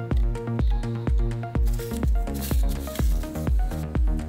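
Background electronic music with a steady kick-drum beat about twice a second and short synth notes. A rising whoosh swells about two seconds in.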